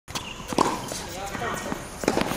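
Tennis ball struck by a racket and bouncing on a hard court: a few sharp pops, the loudest about half a second in and another at the very end, with faint voices in the background.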